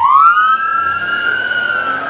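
Police siren wailing: the pitch rises quickly in the first half second, then holds high and slowly falls.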